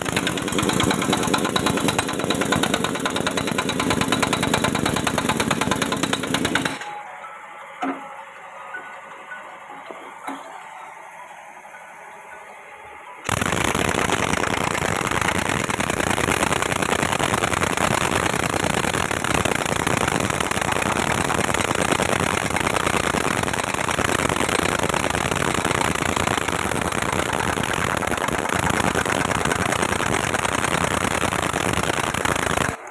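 Pneumatic impact wrench hammering continuously on the nut of a puller bracket, straining to draw a stuck power cell out of a hydraulic rock breaker's frame. About seven seconds in it stops for some six seconds, leaving only a few light clicks, then runs again.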